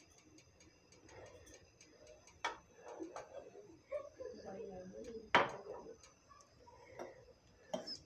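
Faint kitchen handling sounds: a few light clicks and knocks of utensils, the sharpest about five seconds in.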